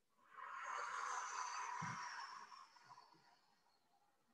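A long, audible exhalation through the mouth, close to the microphone, as the breath goes out during a prone back-extension effort. It swells up within the first second and then slowly fades away.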